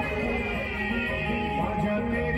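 Live qawwali: a boy's amplified voice singing into a microphone over hand-drum accompaniment, the music steady and unbroken.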